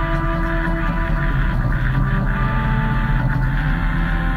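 Live band jam music: held, droning tones over a sustained low bass, with some of the held notes changing about a second in.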